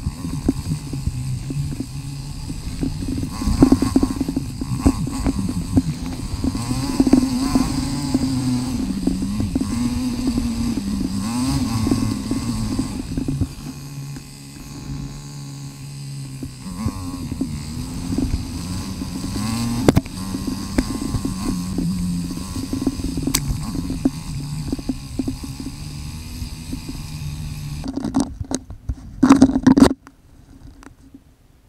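KTM Freeride 350 single-cylinder four-stroke engine on the move, played back at four times speed, so its revs rise and fall rapidly at a raised pitch, with occasional sharp knocks. Partway through it settles to a quieter, steadier note for a few seconds, and near the end the sound turns choppy.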